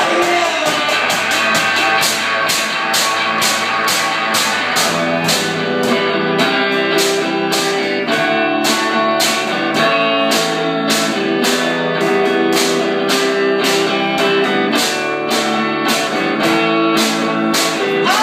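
Live instrumental passage: an electric guitar playing over a steady, fast beat struck on metal cans used as drums.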